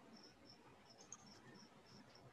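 Near silence: faint room tone with quiet, evenly repeated high-pitched insect-like chirps, about four a second.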